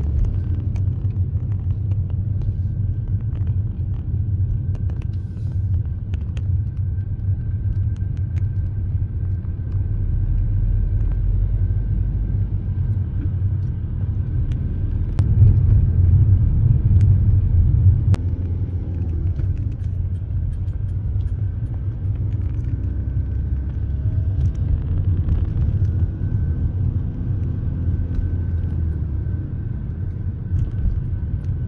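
Steady low rumble of a car on the move, heard from inside, with a faint steady whine above it. It swells for a few seconds about halfway through.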